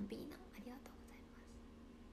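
A woman's soft, half-whispered speech for about the first second, then quiet room tone.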